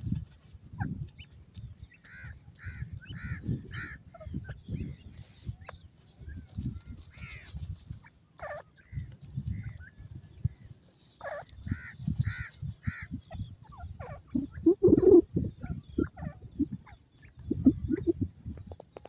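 Grey francolins (teetar) calling: two runs of four or five short, evenly spaced arched notes, with scattered single notes and a louder, lower call near the end, over a constant low rumble.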